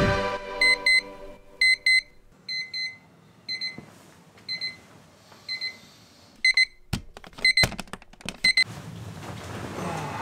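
Digital bedside alarm clock beeping: short high-pitched double beeps, about one pair a second. A few knocks come late on, and the beeping stops shortly after.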